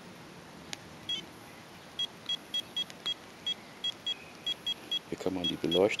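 A Garmin eTrex handheld GPS unit beeping as its keys are pressed to step through its menus: about a dozen short, high beeps at an uneven pace.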